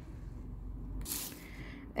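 A brief scraping rustle about a second in, lasting about a quarter second: the cardboard doll box's sliding front panel pushed shut by hand.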